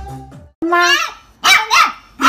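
A puppy barking in high-pitched yaps: one about half a second in, then two more in quick succession near the end.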